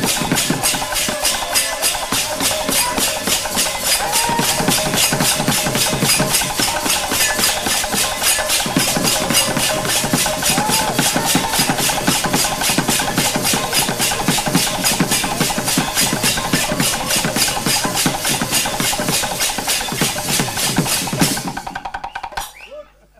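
Kirtan percussion ensemble playing loudly: large brass hand cymbals clashed together in a fast, even rhythm over a big barrel drum. The playing stops abruptly near the end.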